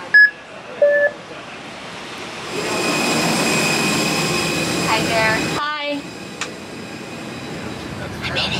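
Gate boarding-pass scanner giving two short electronic beeps as a phone's mobile boarding pass is held over it. A few seconds later comes steady airliner noise, a hiss with a high whine, which stops abruptly.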